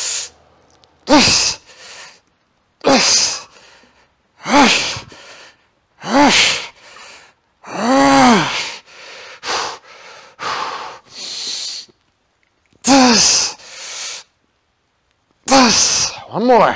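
A man's forceful breathing and grunting through a set of barbell bench press reps: a hard exhale roughly every two seconds, some of them voiced as short grunts that fall in pitch.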